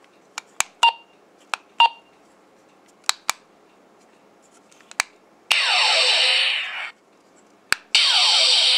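Diamond Select Star Trek II Type-1 hand phaser toy: a run of plastic button clicks, some with a short electronic beep, as its settings are selected. About five and a half seconds in, its speaker plays the phaser firing effect, a rushing electronic blast with falling sweeps lasting over a second; one more click comes near the end as the next shot begins.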